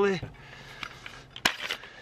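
Handle of a folding survival multi-tool being opened by hand: one sharp click about one and a half seconds in, followed by a brief light clatter as the knife stored inside is drawn out.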